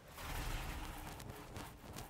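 Mohair paint roller rolling wet paint over a flat door panel: a faint, soft rubbing.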